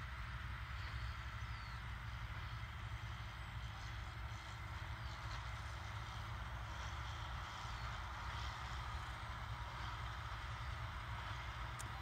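Distant John Deere 8320 tractor's six-cylinder diesel running steadily while pulling a large square baler.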